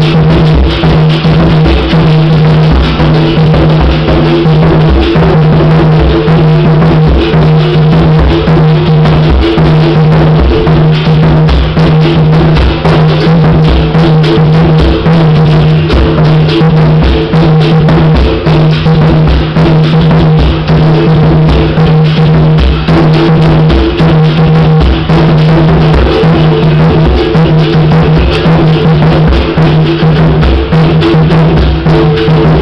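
Berimbau and atabaque played together in a steady capoeira rhythm, loud and continuous: the berimbau's twanging struck wire over the hand-struck drum.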